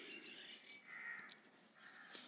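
Faint bird calls in the background, two short calls about a second in and near the end, over quiet room tone.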